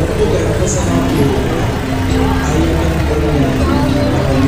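Busy fairground din: a steady low rumble with voices and some music mixed in, from the crowd and rides all around.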